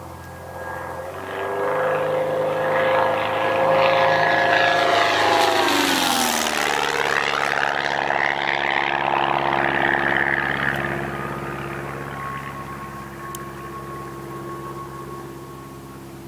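Van's RV-9A single-engine propeller airplane doing a flyby. Its engine and propeller drone grows louder as it approaches, drops sharply in pitch as it passes about six seconds in, then fades steadily as it flies away.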